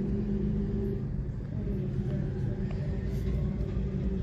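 A steady low rumble with a constant hum running under it.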